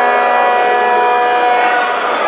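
A sound-system siren effect holding one steady, loud note rich in overtones, then cutting off.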